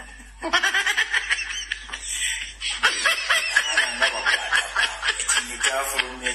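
A man laughing in quick, repeated chuckles, starting again about half a second in after a brief lull.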